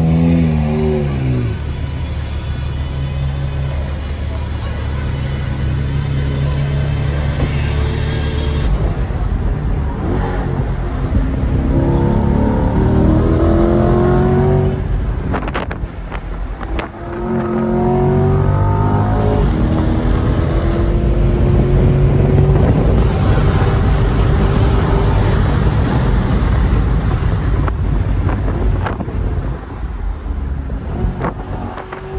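Chevrolet Corvette C8's mid-mounted V8 heard from inside the open-topped cabin: a steady low engine note at first, then the revs rise in long sweeps under hard acceleration through the gears, with a brief break in the middle.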